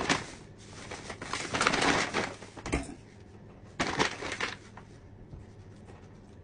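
Rustling, crinkling handling noise in bursts: a brief one at the start, a longer and louder one about one to three seconds in, and a shorter one about four seconds in.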